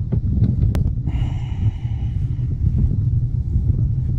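Wind buffeting the camera microphone, a steady low rumble, with a sharp click a little under a second in and a short hiss from about one to two and a half seconds in.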